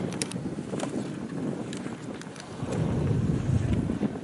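Wind on the camera's microphone, an uneven low rush that rises and falls, with a few faint clicks.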